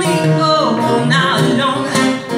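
Live acoustic rock song: a woman singing into a microphone, her voice sliding between notes, over two acoustic guitars.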